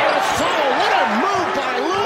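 Arena crowd noise during live basketball play, with the ball bouncing on the hardwood court and voices calling out.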